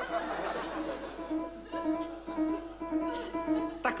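Petrof grand piano played quietly: a melody of ringing notes over held tones, a tune being tried out.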